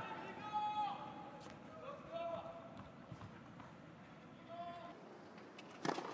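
A few faint, short voice calls over low arena ambience, then a sharp tennis ball strike just before the end.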